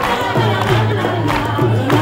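Live acoustic band playing: strummed acoustic guitars, violin and a two-headed barrel hand drum keeping a steady beat, with many voices singing along.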